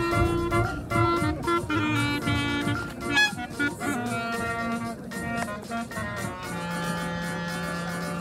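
Clarinet played live, a quick melody of many short notes, over a steady electronic backing beat; a long held low note sounds near the end.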